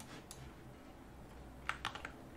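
Clicking at a computer during a pause: one faint click just after the start, then two sharp clicks close together near the end, over low room hiss.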